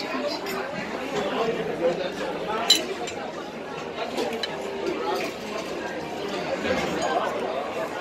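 Chatter of many diners in a restaurant dining room, with cutlery clinking on plates; one sharp clink stands out a little under three seconds in.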